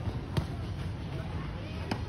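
Two sharp pops of a tennis racket striking the ball, about a second and a half apart, the first the louder, over a low steady outdoor rumble.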